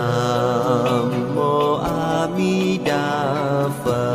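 Buddhist devotional chant music: a melodic voice with a wavering vibrato moves through held notes over a steady low drone.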